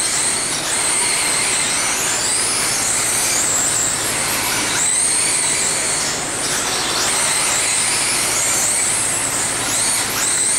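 1/10-scale electric RC sprint cars racing: high-pitched electric motor whines that rise and fall in pitch again and again as the cars throttle up and back off through the turns, over a steady hiss.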